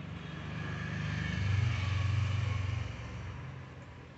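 A motor vehicle passing by: its engine hum grows louder, peaks about two seconds in, then fades away.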